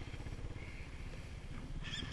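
Dirt bike engine idling steadily, an even low pulsing.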